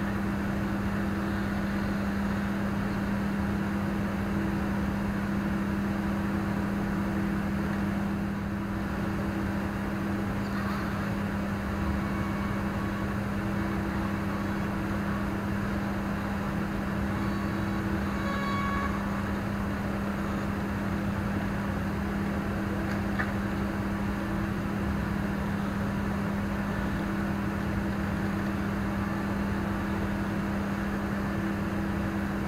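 A steady low hum over a faint hiss, unchanging throughout. A few faint, brief high whines come a little past the middle.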